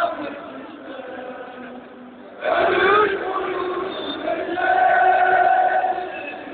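Football crowd chanting in unison in a stadium. It is quieter for the first couple of seconds, then about two and a half seconds in the massed voices come in loudly, holding long sung notes.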